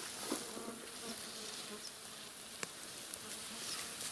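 A flying insect buzzing close by with a faint, steady hum. A single brief click comes about two and a half seconds in.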